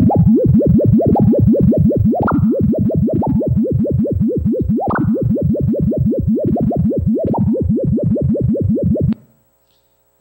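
Computer-generated sonification of the circular symplectic ensemble: a sine tone phase-modulated by the squared incompressibility function of 50 levels. It is heard as about five pitch swoops a second, with a few larger upward swoops that mark the bigger fluctuations, and it cuts off about nine seconds in.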